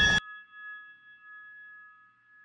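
A dense, loud sound cuts off suddenly, leaving a high ringing tone of a few steady pure pitches that hangs on and slowly fades.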